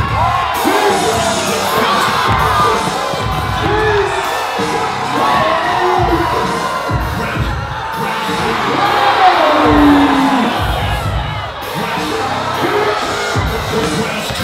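Loud dance music with a repeating bass beat, and a crowd cheering, shouting and whooping over it.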